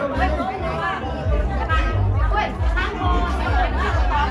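Music with a strong, pulsing bass beat, mixed with a crowd of voices chattering.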